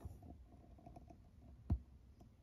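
Quiet room tone broken by a single sharp click about three-quarters of the way through.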